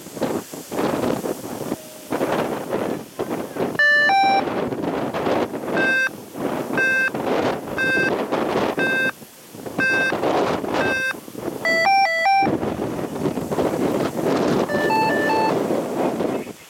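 Electronic beeps from an F3F race timing system over gusty wind buffeting the microphone. A two-tone beep comes about four seconds in, then single beeps about once a second for some six seconds, a quick run of several tones around twelve seconds, and two beeps near the end.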